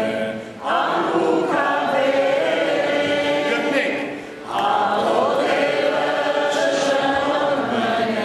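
Voices singing a slow Armenian church hymn together, in long held phrases with short pauses for breath about half a second in and again about four seconds in.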